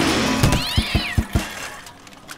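Cartoon sound effects for a cloud of dust puffing up: a rush of noise that dies away, with a run of about five quick knocks and a short arching squeal in the middle, over background music.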